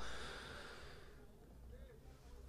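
A quiet pause with no clear event: a faint hiss fades away over the first second, leaving low steady background noise.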